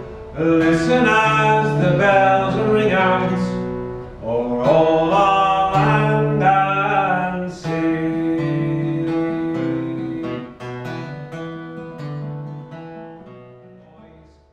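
Acoustic guitar strummed and picked in an instrumental break of a folk song, with a wavering melody line above the chords. It grows softer over the last few seconds.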